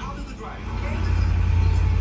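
Film soundtrack from a television: the low rumble of a vehicle in a driving scene, growing louder about a second in, with a few words of dialogue at the start.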